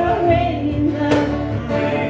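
A small live band playing a song on acoustic and electric guitars, with held sung notes and a percussion hit about a second in.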